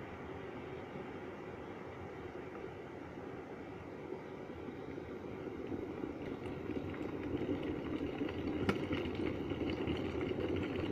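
Electric jug kettle coming to the boil, a steady rumbling rush of water that grows louder through the second half, with a small click near the end.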